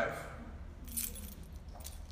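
Keys on a keychain jangling in a hand in a few short jingles.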